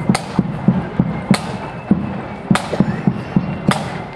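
A marching flute band's drums beating a steady marching rhythm: short thuds about three times a second, with a sharp crack about every second and a quarter.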